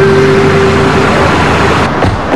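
A car driving up and slowing, heard under background music holding one long note that ends shortly before a sudden change in the sound near the end.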